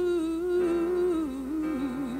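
A woman singing a long held note in a gospel solo, stepping down just after a second in to a lower note with a wide vibrato, over grand piano accompaniment.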